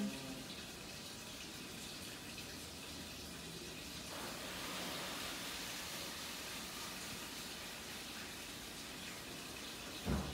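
Steady rush of running water, a little louder around the middle.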